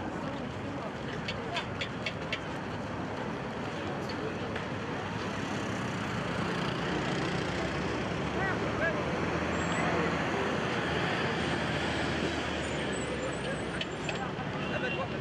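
Outdoor roadway ambience: steady traffic noise from passing cars and trucks with the indistinct voices of a crowd mixed in, swelling slightly about two-thirds of the way through. A few sharp clicks sound in the first couple of seconds.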